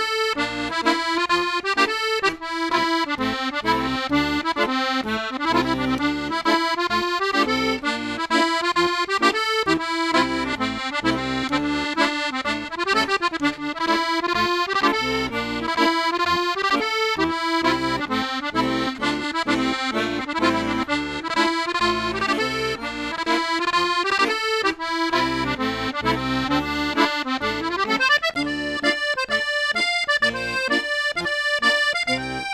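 Accordion playing a Scottish strathspey, a dance tune in its snapped dotted rhythm, with melody over bass and chord accompaniment and a rising run near the end.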